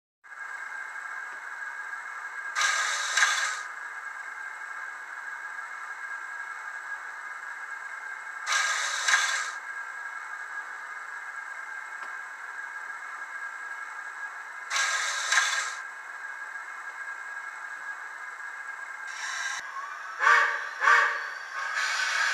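Steam hiss from a model steam locomotive's sound decoder through a small speaker: a steady hiss with a faint high whine, swelling into a louder hiss for about a second three times, about six seconds apart, with a few shorter sharp bursts near the end.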